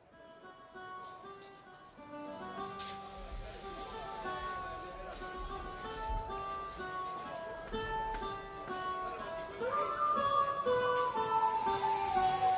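Live southern Italian folk band playing the instrumental opening of a pizzica tune on accordion, flute and guitar, fading in from silence and growing steadily louder. A steady hiss joins near the end.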